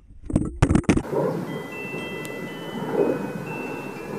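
A burst of loud splashing, then several clear, sustained ringing tones, like wind chimes, over a steady hiss.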